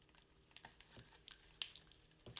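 Faint, irregular light clicks from window-blind slats and cords being handled, the sharpest one about one and a half seconds in.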